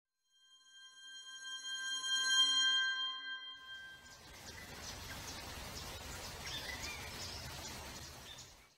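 Intro sound for a station logo: a sustained, bell-like electronic chord swells and fades over the first few seconds. It gives way to a steady outdoor-ambience hiss with scattered bird chirps.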